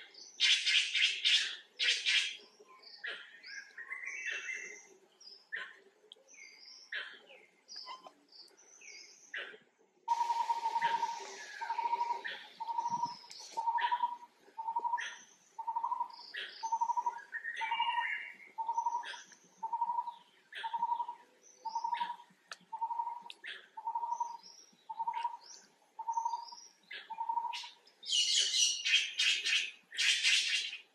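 Forest birds calling: scattered chirps, with bursts of rapid high chirping near the start and near the end. From about a third of the way in, one bird repeats a short low note about once a second, some seventeen times.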